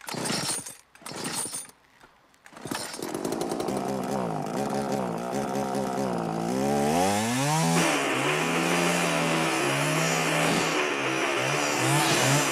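Chainsaw sound effect: two short bursts, then the saw running with its pitch sliding up and down as it is revved. It climbs higher about five seconds in and holds steady, stuttering briefly near the end.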